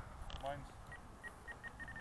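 Faint short electronic beeps, all at one pitch, about six of them in the second half, coming faster toward the end.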